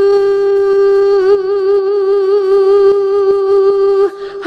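Isolated female lead vocal with no accompaniment, holding one long sung note, steady at first and then with vibrato from about a second in, breaking off at the end.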